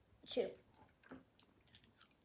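Dried seaweed snack being bitten and chewed, with a few faint crisp crackles near the end.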